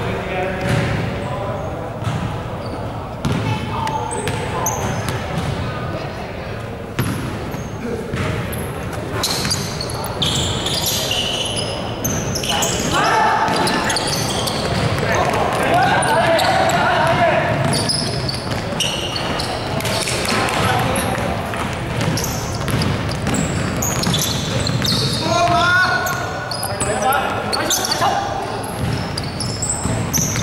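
Basketball game in a large, echoing gym: a ball bouncing repeatedly on the wooden court, with players calling out and shouting, loudest through the middle and again near the end.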